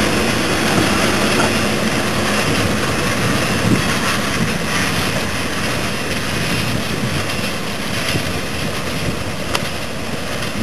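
A train of goods wagons rolling past and drawing away, a steady rumbling noise that grows gradually quieter as it recedes, with wind on the microphone.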